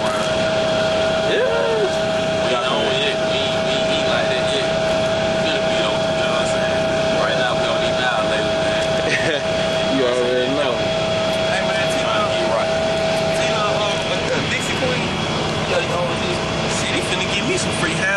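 Steady drone of a Greyhound coach on the move, heard from inside the passenger cabin. A thin steady whine runs under it and stops about three-quarters of the way through, with bits of indistinct talk here and there.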